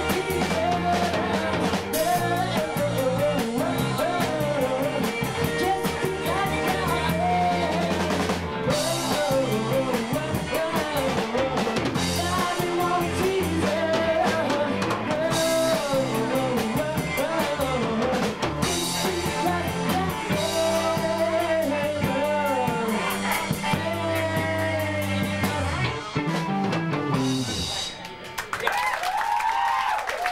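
Live rock band playing a song with sung vocals, drum kit and electric guitar. The song stops near the end.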